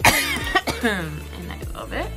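A woman coughs sharply twice in the first half second, followed by a voiced sound that slides down in pitch, over background music with a steady beat.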